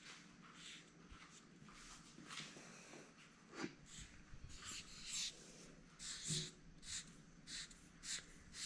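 Felt-tip marker writing capital letters on a sheet of paper on a hard countertop: a series of faint, short scratchy strokes.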